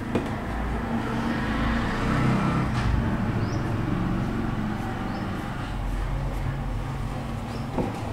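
Steady low background rumble with a faint hum, rising slightly in the first few seconds, much like road traffic heard from indoors.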